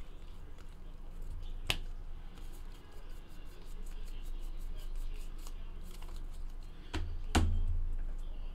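A stack of baseball trading cards being flicked through by hand, with a quick run of soft ticks as the cards slide off one another. Two sharper card clicks sound, one about two seconds in and a louder one near the end.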